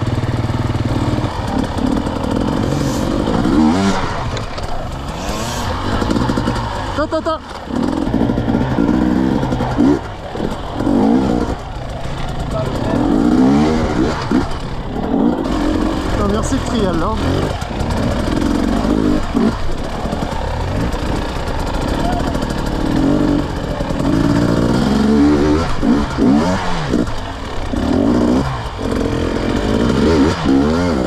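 KTM 250 EXC two-stroke dirt bike engine revving up and down over and over, its pitch rising and falling with each blip of throttle as the bike works over rocky ground.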